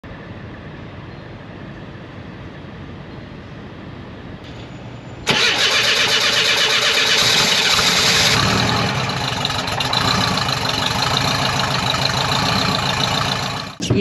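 Air-cooled flat-four engine of a 1978 VW Westfalia bus starting: it comes in suddenly about five seconds in, then runs steadily at idle, easing slightly after about eight seconds.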